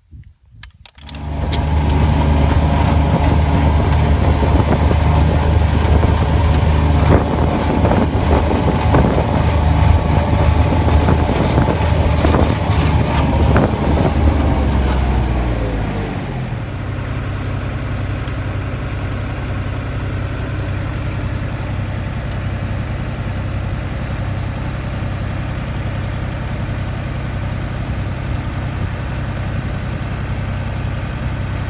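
New Holland tractor's diesel engine running loud at raised revs, then throttled down to a steady idle about fifteen seconds in.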